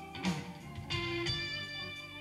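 Live blues band with the electric guitar taking the lead: a few picked notes, then one note held out from about a second in.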